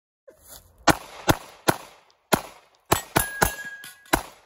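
Seven handgun shots fired in quick, uneven succession at steel targets. The last shots are followed by a steel plate ringing on one steady tone.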